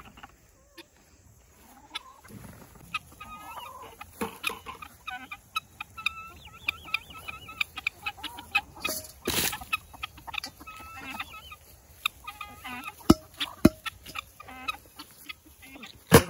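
A flock of backyard hens clucking, many short calls overlapping as they feed on thrown tomatoes. About a second apart near the end come two sharp knocks.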